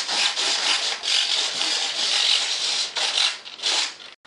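Harsh rubbing, rasping noise in long rough strokes with a couple of brief breaks near the end, and no whine of a running fan.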